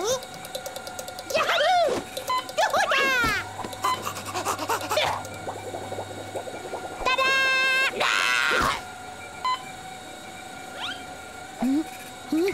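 Cartoon soundtrack of a chick character's high, squeaky vocal cries that glide up and down in pitch, several times, with a held steady-pitched cartoon sound effect and a short noisy swish about seven to eight seconds in.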